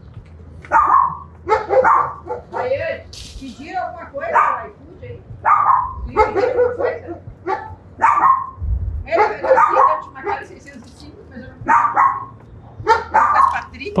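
A dog barking over and over, short sharp barks roughly once a second, with a steady low hum underneath.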